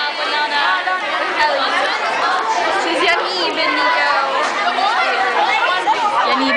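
Many children's voices talking over one another: loud lunchroom chatter.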